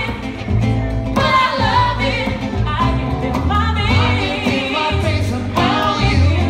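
A live acoustic trio playing a funky groove: a woman singing into a microphone over strummed acoustic guitar and a prominent bass line.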